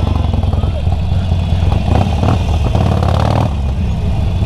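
Harley-Davidson Forty-Eight Sportster's 1200 cc V-twin engine running steadily and low-pitched as the bike rolls slowly through traffic, heard from the rider's seat over busy street noise.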